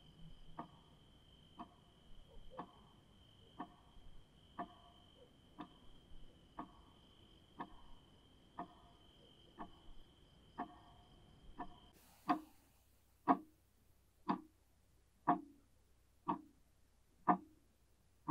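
Clock ticking steadily, about once a second, with a steady high tone running behind it. About two-thirds of the way through the tone stops and the ticks become louder.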